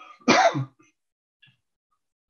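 A man clearing his throat once, in a short, loud burst about a quarter of a second in.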